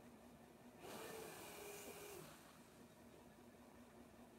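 One breath of air hissing through a nasal-pillow ventilator mask, lasting about a second and a half, starting about a second in. A faint steady hum runs underneath.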